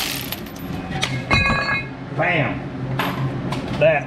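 Metallic clinks and clicks as the steel front caliper bracket and its bolts come off a BMW 335i's brake hub, with a ringing clink about a second and a half in. A couple of short grunts from the man doing the work.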